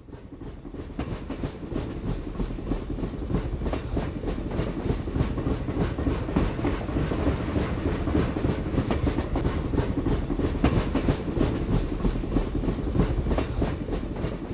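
A train rolling on rails, with a steady low rumble and a rapid, irregular clatter of wheels clicking over the track. It fades in over the first couple of seconds.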